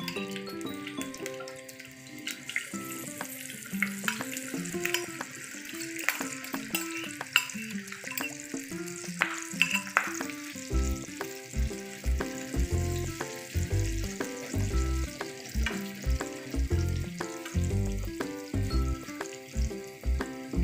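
Grated potato batter sizzling and crackling in hot oil in a frying pan as it is poured in and spread out. Background music plays throughout, with a deep beat coming in about halfway.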